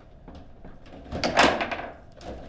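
Table football in play: a quick clatter of hard knocks about a second in, from the ball being struck and ricocheting off plastic figures, rods and table walls. A few lighter clicks come before it.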